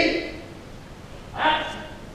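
Short, loud wordless shouts (kiai) from an aikido practitioner performing bokken cuts: one at the start and one about one and a half seconds in, each lasting about half a second.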